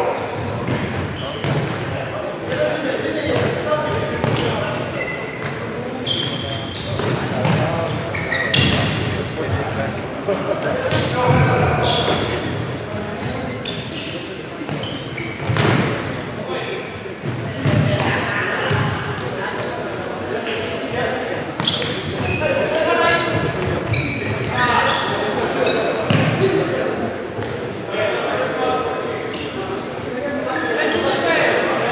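Futsal game in a sports hall: a ball being kicked and bouncing on the wooden floor in scattered sharp knocks, with players calling out, all echoing in the large hall.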